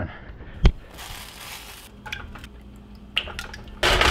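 A sharp click, a short hiss and a few small knocks, then near the end a loud burst of sizzling as beaten eggs cook in a hot nonstick frying pan.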